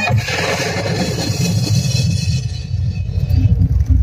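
A live devotional song breaks off at the start, and a noisy wash dies away over about two and a half seconds. An uneven low rumble, unpitched, carries on underneath.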